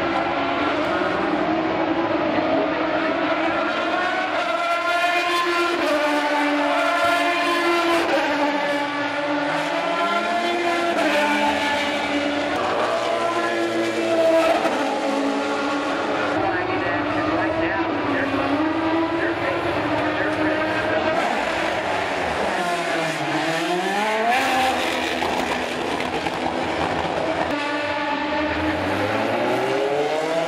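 Several IndyCar Series race cars with 3.0-litre V8 engines running at speed on a road course, high-pitched and rising and falling through gear changes as they brake and accelerate. Twice the engine note drops steeply and climbs back: a car braking and downshifting into a corner, then pulling away.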